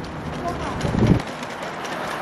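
Traffic noise on a rain-wet city street: a steady hiss with a low rumble that swells and fades about a second in.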